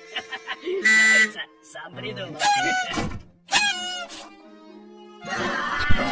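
Cartoon soundtrack: short pitched vocal and musical bursts with sound effects, the loudest a bright held tone about a second in, then a full stretch of music in the last second or so.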